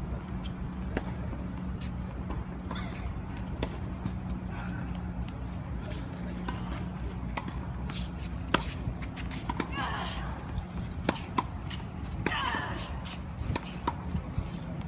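Tennis ball struck by rackets and bouncing on a hard court in a rally: sharp pops at irregular intervals, the loudest about eight and a half seconds in. A steady low hum runs underneath.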